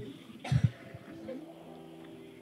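A single short cough about half a second in, then faint steady tones from a phone on loudspeaker as the outgoing call rings, just before it is answered.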